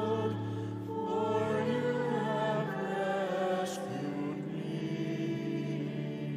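Sung psalm response at Mass: a voice singing over a sustained organ accompaniment. The voice ends about four seconds in, and a held organ chord carries on.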